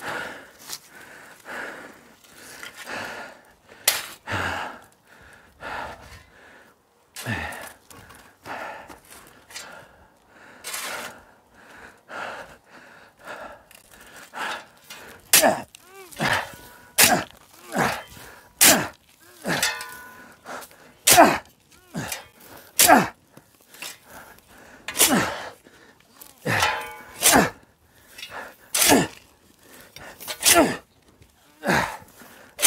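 Shovel blade driving into and scooping sandy soil, a sharp strike every second or two that grows louder and more regular about halfway through.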